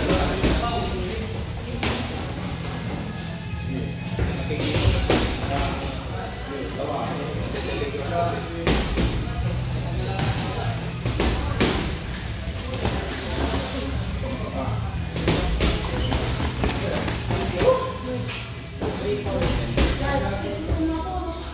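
Irregular thuds from boxing gloves and feet on the ring canvas during a youth sparring session, heard over background music and voices in the gym.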